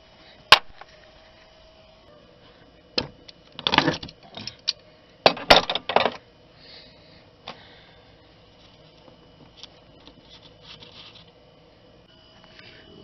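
Metal clicks and rattles of hand tools and a loose bolt as the A/C line block is worked off the expansion valve. There is a sharp click about half a second in, clusters of clinks and rattles from about three to six seconds, and a single click later, over a faint steady hum.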